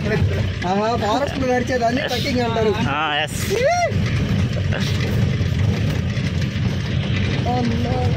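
Jeep engine and drivetrain running as it drives over a rough dirt track, a steady low rumble heard from inside the cabin. Over the first half, passengers' voices carry over it, with one rising-and-falling whoop about three and a half seconds in.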